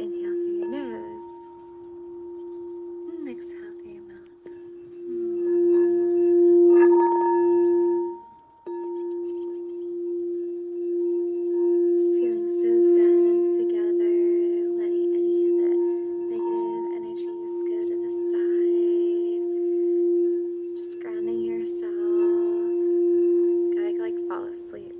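Hot pink crystal singing bowl sung with a wand: one steady ringing tone with fainter higher overtones, swelling louder. About eight seconds in it cuts out for a moment, then is brought straight back and sings on steadily.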